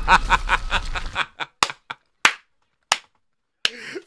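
A man laughing in quick bursts for about a second, then about six separate sharp smacks spaced irregularly.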